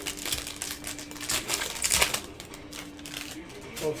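Foil card-pack wrapping crinkling and crackling as it is torn open and handled, in a dense run of sharp crackles that are loudest about a second and a half to two seconds in.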